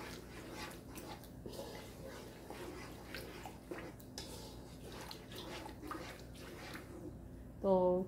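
Thick onion-tomato-yogurt masala frying in a pan over medium-to-high flame, bubbling with scattered small pops and crackles as a wooden spoon stirs it.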